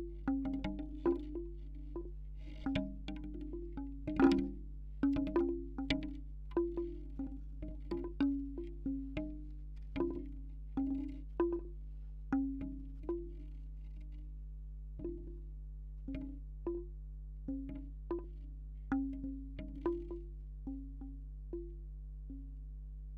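Bamboo wind chime's six tubes knocking irregularly: hollow wooden clonks, each with a short low ring, coming several a second at first and more sparsely in the second half. The clonks are picked up by contact microphones on the tubes, over a steady low hum.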